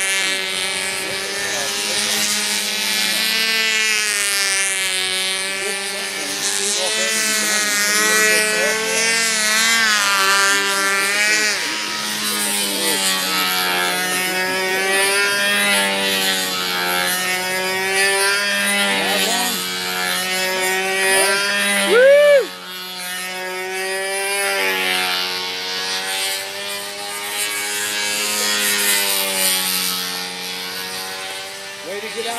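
A control-line model airplane's small glow engine runs steadily at flying speed. Its pitch rises and falls every couple of seconds as the plane circles the pilot on its lines. About 22 seconds in there is a brief, louder swoop in pitch.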